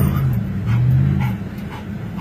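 A dog whining and whimpering inside a moving car's cabin, the low whine breaking off about half a second in, resuming and fading after a second.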